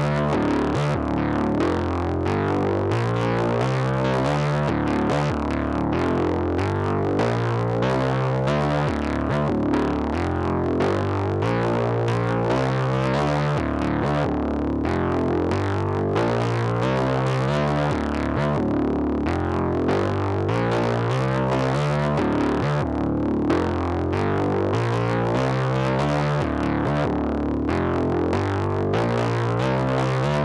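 Native Instruments Monark, a Reaktor emulation of a Minimoog, playing a repeating riff of quick low synth-bass notes on its 'American Needle' patch, at a steady level.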